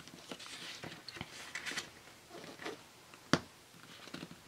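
Brown cardstock rustling and scraping in short strokes as it is slid and folded around a card by hand, with one sharp tap or click about three seconds in.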